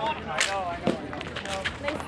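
Players' voices calling out across a street hockey game, with a few sharp clacks of sticks and ball on the asphalt.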